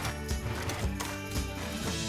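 Background music with a steady, light knocking beat about twice a second over sustained pitched notes.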